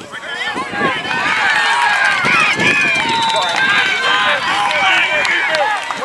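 Football spectators and sideline players yelling and cheering during a play, many voices overlapping. The shouting swells about a second in and stays up.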